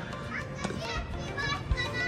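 Faint, distant voices of children calling and playing outdoors, with a low background hum of the open air.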